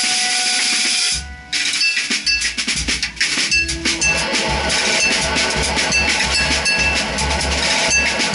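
Free improvisation for electric guitar and drum kit. Sustained electric guitar notes ring for about a second and break off briefly, then the drums come in with a fast, dense run of cymbal, snare and bass drum strokes while the guitar plays on beneath.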